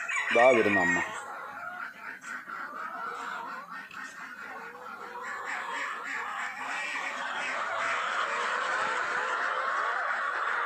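Backyard poultry calling and clucking, a steady din that grows louder in the second half. A person's voice is heard briefly at the start.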